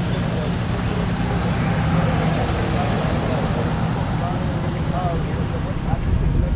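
A vehicle passing close on the road, its engine and tyres making a steady low rumble, with faint distant voices underneath.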